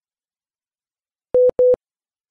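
Two short, steady beeps of one mid-pitched tone, close together, about a second and a half in: a broadcast cue tone marking the segment break for relaying stations.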